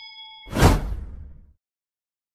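Subscribe-animation sound effects: a bell-like ding rings with a few steady tones, then about half a second in a loud whoosh cuts it off and fades out within a second.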